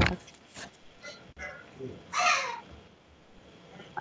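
A single short, harsh animal call about two seconds in, over faint background voices.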